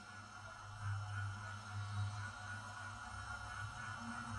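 Soft, low, sustained drone of ambient background music, swelling and easing gently.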